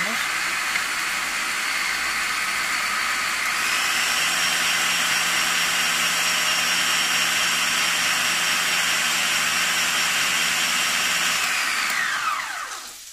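Bosch food processor's motor driving the whisk attachment, beating eggs: a steady whine that steps up to a higher speed about three and a half seconds in and winds down shortly before the end.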